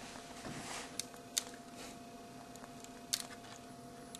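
Faint handling of twisted-pair Ethernet cable wires: light rustling and three small clicks, two about a second in and one near three seconds, over a steady low hum.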